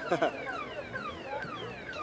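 A car alarm sounding, a rapid repeating run of falling whistle-like sweeps, several a second.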